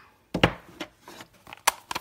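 Light taps and sharp clicks of a clear acrylic stamp block being handled and set down on a hard desk, with paper rustling; the sharpest click comes near the end.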